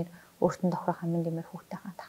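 A woman speaking Mongolian in short phrases, after a brief pause near the start.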